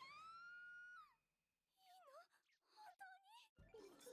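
Faint audio from the anime episode: a high-pitched wailing cry that rises and holds for about a second, then drops off. A few short swooping cries follow near the middle and end.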